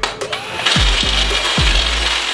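Background music with a deep kick drum, over a cordless drill whirring that starts under a second in.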